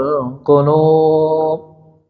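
A man's voice chanting a Quranic phrase in Arabic, the verse's closing words 'tatma'innul qulub' (hearts find rest), in melodic recitation. A short wavering phrase, then one long held note that fades out near the end.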